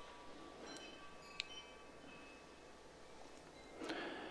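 Near silence: room tone, with a few faint high ringing tones in the first second and a half and one soft tick.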